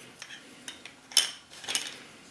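A few light clicks and taps of small letter tiles being handled over the game cards, the loudest just over a second in.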